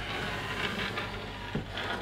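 A heavy HP 1650A logic analyzer's metal case sliding and being turned on a desktop: an uneven scraping, rubbing noise.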